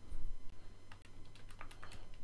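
Calculator keys being pressed: a run of short, sharp clicks as numbers are keyed in, coming quicker in the second half.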